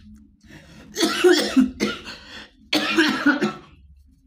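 A man coughing in two hard bouts, the first about a second in and the second about three seconds in.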